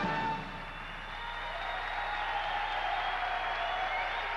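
A stage production number's music ends on a held note about half a second in, then the audience applauds, the applause swelling after a brief dip.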